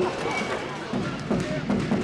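Basketball arena sound during play: voices and shouts from the spectators and players, with a few sharp knocks.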